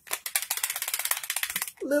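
Fixed-blade knife moving in its Kydex sheath, a fast, even run of clicks lasting about a second and a half. The knife sits a little loose in the sheath.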